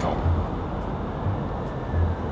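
A steady low rumble of background noise, with a low hum that swells briefly now and then.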